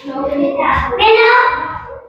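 A teenage boy's voice, drawn out and without clear words, for most of the two seconds: a hesitant, half-sung 'um' before he answers.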